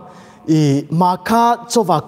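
Only speech: a man preaching into a microphone, starting after a pause of about half a second.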